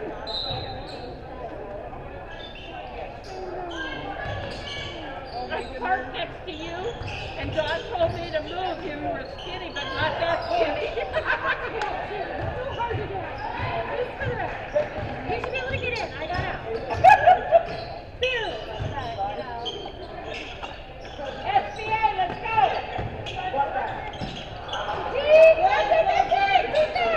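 Basketball game in a gym: a ball bouncing on the hardwood court amid players' and spectators' voices calling out, echoing in the large hall, with louder moments as play reaches the basket near the end.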